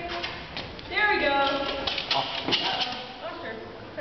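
People talking in the background, with scattered light taps and knocks.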